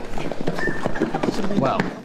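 Many quick, irregular footsteps and shuffling on a hard wooden floor as a tightly packed group of people stumbles forward together after a push, mixed with several people's voices.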